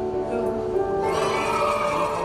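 Cheerful game music from an e-book classroom game played over the hall's speakers, with a brighter sound effect joining in about a second in as a team scores a point.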